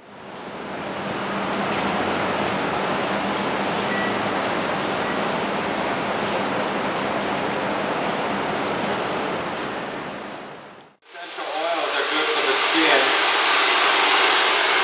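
A steady rushing noise fades in and holds for about ten seconds, then fades out. From about 11 seconds in, a handheld hair dryer blows steadily, blow-drying curly hair, with voices over it.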